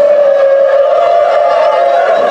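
A crowd holding one long, loud cheer on a single sustained pitch.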